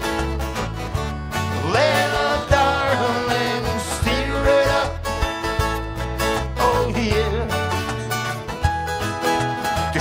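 Live band of several acoustic guitars strumming, over a steady run of low bass notes. A voice sings over them in phrases that rise and fall.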